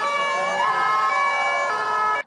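Sirens of several fire trucks sounding together, overlapping tones of different pitches, some slowly rising and falling.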